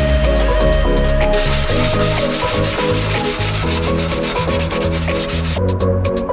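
Hand sanding of body filler with a sandpaper-wrapped sanding block, a run of rasping back-and-forth strokes that starts about a second in and stops shortly before the end. Background electronic music plays throughout.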